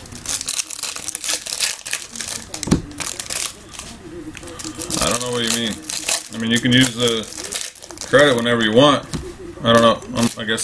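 Foil trading-card pack wrappers crinkling and tearing as packs are ripped open, the crackle densest in the first half, with a voice coming in from about halfway.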